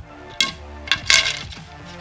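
Arrow shafts being handled on a digital grain scale, clicking and clattering three times, the last clatter the longest and loudest, over background electronic music with a steady beat.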